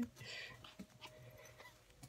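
A small dog makes faint play noises, a soft whimper and panting, while tugging at a jacket sleeve.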